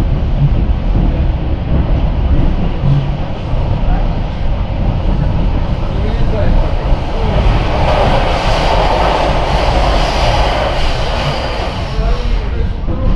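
Steady low rumble of a moving passenger train heard from inside the carriage. Partway through, a louder rushing stretch of several seconds rises over it as a freight train of hopper wagons passes on the next track.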